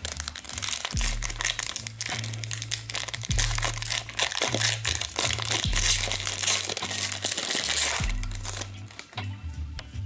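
A plastic hockey card pack wrapper being torn open and crinkled by hand. The crackle is dense and fades out near the end, over background music with a repeating bass line.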